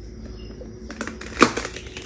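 Wafer ice cream cones crackling under the weight of a person stepping onto them. A quick run of sharp cracks starts about a second in and peaks about halfway through, with one more crack near the end.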